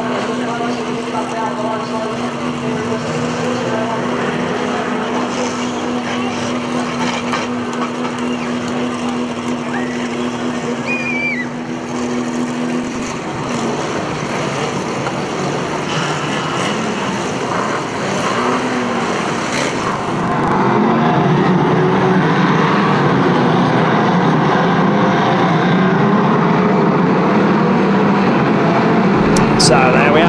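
Engines of old pre-1975 banger racing cars running on a shale track, with a steady low drone in the first part. About two-thirds of the way through, the sound jumps to a louder, denser mix of several engines as the pack races.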